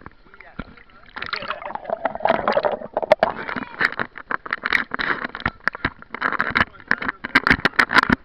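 Pool water heard by a camera moving under and through the surface: a muffled underwater rush with bubbles, then sloshing and splashing with many sharp clicks and knocks as it breaks the surface, busiest near the end.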